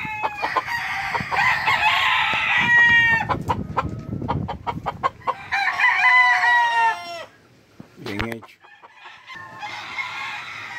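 Gamecocks crowing in their pens, several long crows: one over the first three seconds, another at about six seconds and a third starting near the end, with a short low call in between.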